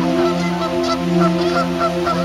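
A flock of geese honking in short, repeated calls, a few a second, over slow background music with sustained, swelling notes.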